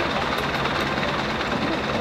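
Minibus engine idling: a steady low rumble that holds at one level throughout.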